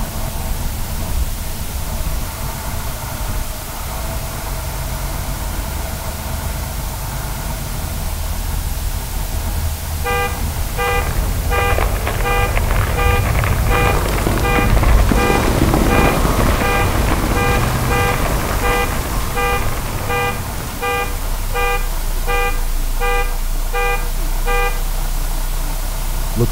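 A low rumble builds into a loud, noisy crash near the middle as a building collapses in an aftershock. From about ten seconds in, a car alarm sounds its horn in a steady beat of about two honks a second.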